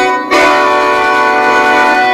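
Khaen, the Lao bamboo free-reed mouth organ, playing a held chord of many steady notes. It breaks off briefly just after the start, then sounds again and holds steady.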